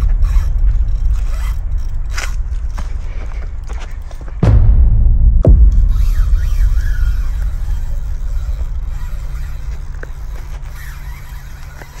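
Spinning reel cranked against a fish on a hard-bent rod, with irregular mechanical clicks and scrapes. A loud low rumble of handling on the microphone lies under it and jumps louder about four and a half seconds in.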